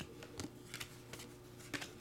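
Panini Hoops basketball cards being flicked through by hand, one card at a time off a held stack, giving about five soft, faint snaps of card stock over two seconds.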